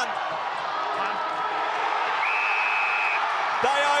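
Crowd noise in a football stadium, with the final siren sounding once as a steady tone for about a second, a little after the middle. The siren signals full time.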